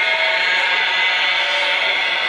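A man's voice holding one long, steady chanted note in an elegy recitation, the drawn-out end of a mournful sung line.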